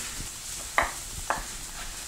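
A chef's knife strikes a wooden cutting board twice, about half a second apart, while dicing red bell pepper. Under it runs a steady sizzle of salmon searing in a hot oiled pan.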